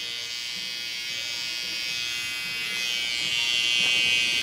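Electric hair trimmer buzzing steadily as it edges up a hairline, growing louder toward the end.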